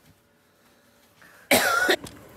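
A child's short, loud shout near the end, after about a second and a half of near silence.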